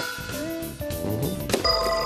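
Electronic game-show music cue with shifting chime-like tones playing under a timed quiz round. About one and a half seconds in, a sharp click and a ringing bell-like tone come in: a contestant's buzzer.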